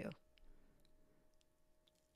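Near silence: room tone with a few faint small clicks, after a spoken word trails off at the start.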